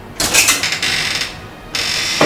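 A door's metal lock and handle being worked, clicking and rattling in two bursts, as the door is unlatched and opened.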